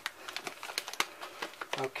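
Crinkling and crackling of packaging being handled and opened: irregular sharp clicks, like paper or plastic being crumpled.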